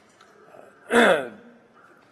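A man clearing his throat once, about a second in: a short, rough burst that drops in pitch.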